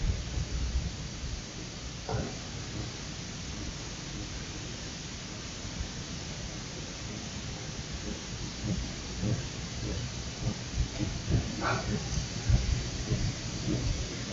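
Steady hiss of background noise with a low rumble beneath it, broken only by a few faint, brief sounds about two seconds in and near the end.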